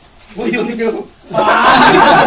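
People chuckling and talking. A single voice first, then louder, overlapping voices and laughter come in a little past halfway.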